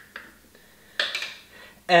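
Mason jar and its lid being handled: a faint click, then a short clink of metal on glass about a second in.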